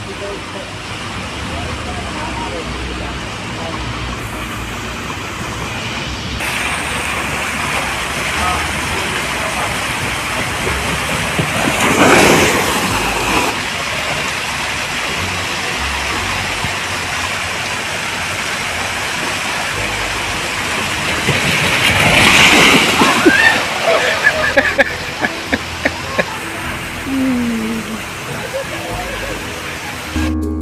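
Waterpark ambience: a steady wash of running and sloshing pool water with indistinct voices in the background. Two louder surges come about 12 and 22 seconds in.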